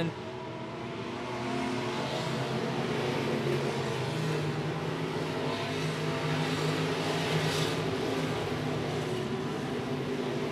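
A field of IMCA stock cars racing on a dirt oval, their V8 engines running hard at racing speed. The engines grow louder about a second and a half in as cars come past close by.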